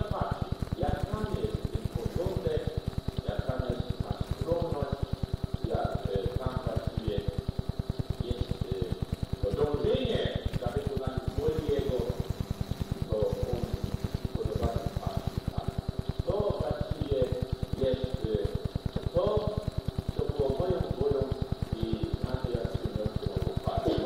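Speech from an old, noisy tape recording of a talk, continuing with short pauses. Under it runs a fast, even low ticking, and there is a faint steady high whine.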